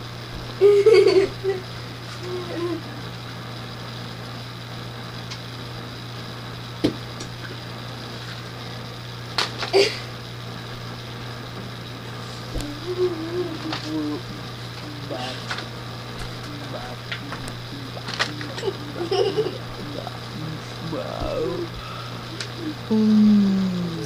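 Objects being handled and set down, giving a few sharp clicks and knocks, with scattered short murmurs and laughs. A steady low hum runs underneath.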